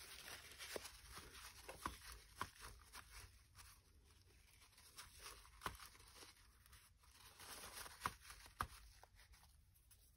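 Faint rustling and crinkling of gauzy cheesecloth, paper and a tissue as hands press glued layers down onto a collage journal cover and dab them, with a few light taps and clicks. The rustling stops shortly before the end.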